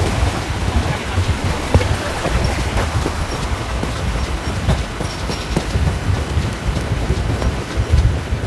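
A bicycle ridden over a rough dirt park path, giving a steady low rumble with wind on the microphone and scattered knocks and rattles from the bike.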